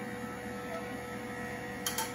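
Small electric motor of a welding turntable running, a steady hum as it slowly rotates the pipe, with a single sharp click near the end.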